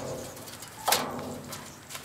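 A bird calling in low tones, with a sharp knock at the start and a louder one about a second in.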